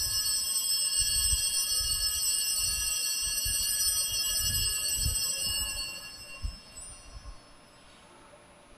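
Altar bells ringing at the elevation of the consecrated host, signalling the consecration of the bread at Mass. Several high, steady tones ring together and fade away about six to seven seconds in.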